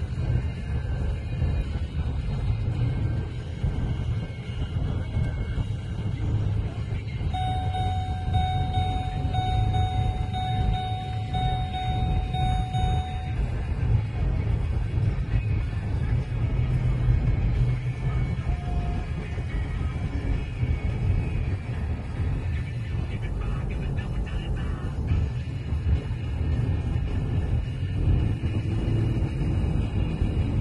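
Steady low rumble of a car driving, heard from inside the cabin, with music playing under it. A thin steady tone sounds for about six seconds partway through.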